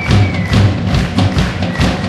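A band playing live, the drum kit driving a quick, steady beat of drum thumps and cymbal hits, with a high held note that slides slightly down in the first half second.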